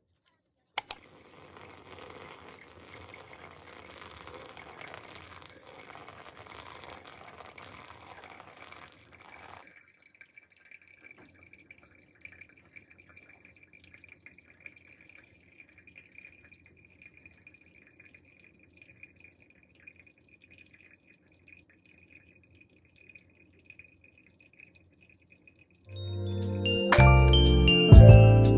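Water poured onto coffee grounds in a pour-over dripper with a paper filter, a soft, even pour that stops suddenly about ten seconds in. After it, coffee drips faintly and irregularly through the filter over a faint steady high tone.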